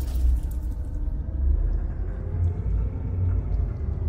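Deep, pulsing rumble of a cinematic intro sound effect, heavy in the low end with little treble, trailing off a boom.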